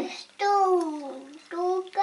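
A toddler's voice: one long vocal sound falling in pitch about half a second in, then a short one near the end.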